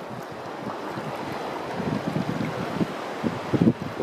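Wind buffeting the microphone over shallow seawater, with low irregular rumbling and some water sloshing as someone wades through ankle-deep water.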